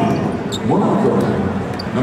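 Basketball arena ambience: basketballs bouncing on the court amid a mix of voices and crowd chatter.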